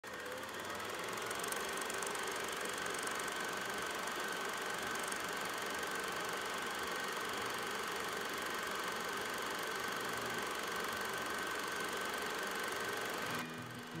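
Film projector running: a steady mechanical whirr and clatter with a continuous whine, cutting off suddenly near the end.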